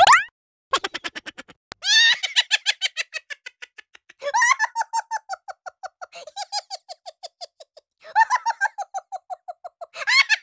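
High-pitched laughter in three bouts, each opening with a squeal and running into a fast string of short, even "ha" pulses.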